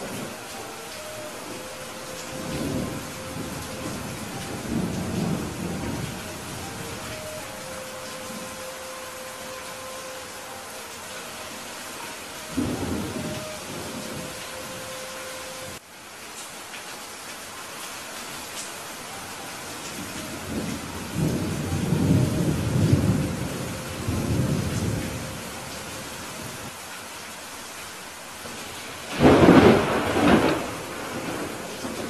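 Steady rainfall with thunder rumbling several times, the longest roll about two-thirds of the way through, and a loud, sharper thunderclap near the end.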